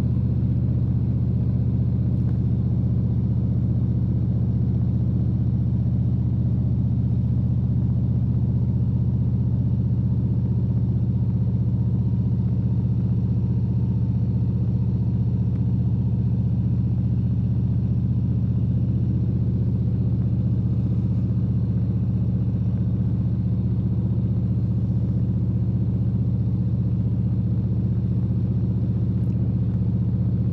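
Touring motorcycle engine running at a steady cruise, a low, even drone with the rush of air and road beneath it and no change in revs.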